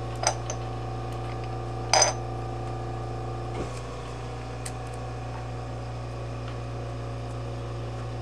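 Small china dishes clinking as they are handled: a light clink just after the start, a louder one about two seconds in that rings briefly, then a couple of faint ticks, over a steady low hum.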